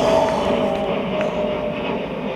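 A steady distant engine drone, its tone slowly falling, under faint outdoor background noise.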